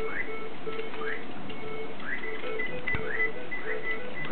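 Electronic sounds from computers looped into a rhythm: a low beep repeating about four times a second, with short rising chirps above it. A single click about three seconds in.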